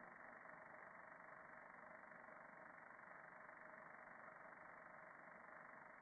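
Near silence: a faint, steady background hiss of recording noise, with a sharp upper cutoff that makes it sound dull and narrow.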